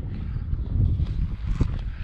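Wind rumbling on the microphone, with a couple of light knocks from handling the fishing rod and reel, about a second in and near the end.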